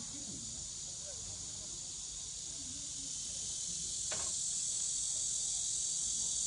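A chorus of cicadas in the trees, a steady high shrill drone that grows louder about four seconds in.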